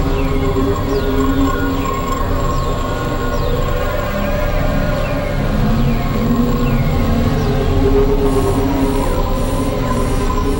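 Experimental synthesizer drone music: a dense low rumble with several held tones, and short falling chirps repeating high above it about once a second. A pulsing high tone comes in near the end, about twice a second.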